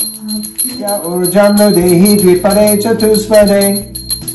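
A man chanting a Sanskrit mantra in held, step-wise notes, over background music with a steady jingling bell beat.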